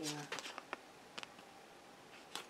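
A few faint clicks and taps, about four in the first second or so, as a tarot card is picked up and handled, then quiet room tone.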